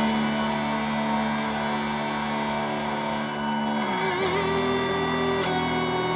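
Solo electric guitar played through effects pedals: layered, sustained tones held like a drone, with a low note gliding down in pitch about four seconds in.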